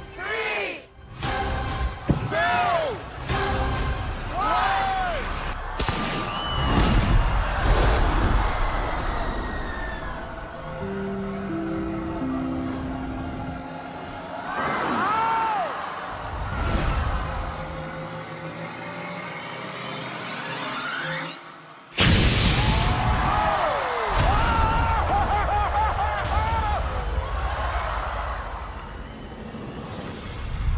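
Dramatic television score under crowd screams and several sharp bangs of stunt pyrotechnics. In the middle the music thins to a few held notes; about two-thirds of the way through it drops out and a sudden loud wall of crowd noise and bangs comes in.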